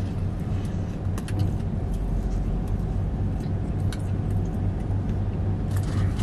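Steady low hum of a car idling, heard from inside the cabin, with scattered small clicks and smacks of chewing.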